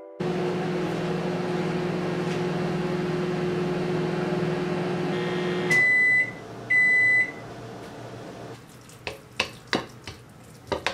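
Microwave oven running with a steady hum that stops about six seconds in, followed by two beeps about a second apart that signal the end of the heating cycle. Light clicks and knocks follow near the end.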